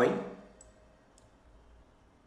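Two faint computer mouse clicks about half a second apart, bringing up the browser's translate menu.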